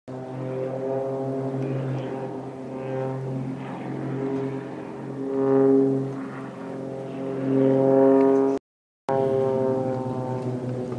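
Aerobatic propeller plane's engine droning overhead at a steady pitch, swelling louder twice, with a brief break in the sound near the end.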